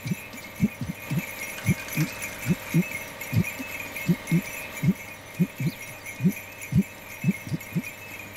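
Short, low, thudding pulses, about two or three a second at an uneven pace, over a faint steady high tone: a comic film background-score effect.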